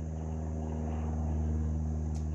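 Steady low mechanical hum made of several even tones, holding level without change.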